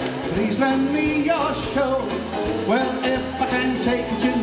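Upbeat recorded song for a jive, a singer's voice over a steady beat with bass and percussion.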